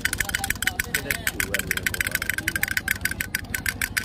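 Battery-operated toy duck drummer beating its small plastic drum with rapid, steady taps, over a low hum.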